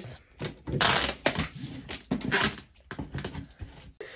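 Packing tape being pulled off the roll and pressed across a cardboard box, in two noisy pulls: one about a second in and another at about two seconds, with small taps and rustles between.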